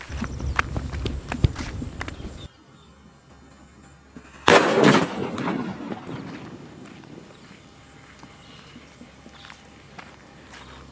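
A hand-made paper-wrapped country firecracker (naatu vedi): a couple of seconds of sputtering and crackling from the lit fuse, then, about four and a half seconds in, one sharp bang that dies away over about a second.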